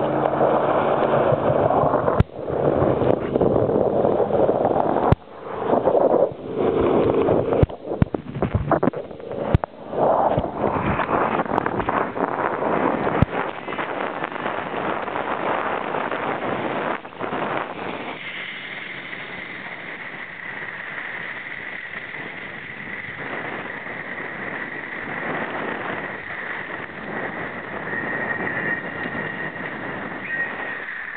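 Water churning and splashing around a wakeboarder's POV camera during a deep-water start, loud and choppy with sharp splashes through the first half. It then settles into a steadier rush of water and wind as the board planes, with a thin steady whine from about eighteen seconds in.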